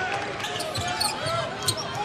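Arena crowd noise during a college basketball game, with a basketball being dribbled on the hardwood court: short knocks near the end.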